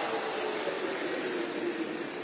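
Live audience applauding and laughing in response to a punchline, a steady even patter that dies away just as the performers speak again.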